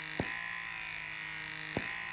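PMD Microderm Elite Pro's vacuum-suction motor running with a steady whine while the wand is held against the skin, with two brief clicks, one just after the start and one near the end.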